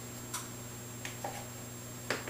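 Quiet kitchen room tone with a steady low hum and a faint high whine, broken by a sharp light click about a third of a second in and a couple of fainter ticks around the one-second mark.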